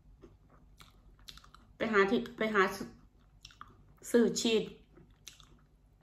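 Faint chewing of a baked breaded mozzarella cheese stick, with small wet clicks and crackles. It is interrupted about two seconds in and again near four seconds by short bursts of a woman speaking, which are the loudest sounds.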